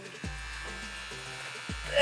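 Electric hair clippers buzzing steadily, over background music with deep falling bass notes.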